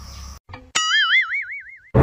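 Cartoon-style magic sound effect: a warbling tone that jumps up in pitch and wavers about five times a second for just over a second, then cuts off sharply, marking a spell that makes someone vanish.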